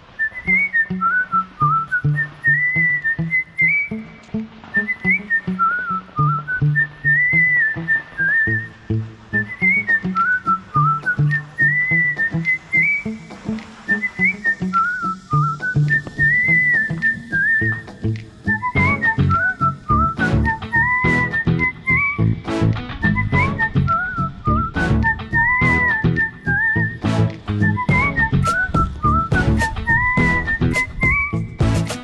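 Background music: a cheerful whistled melody over a plucked bass line, repeating the same phrase, with a percussion beat joining about two-thirds of the way through.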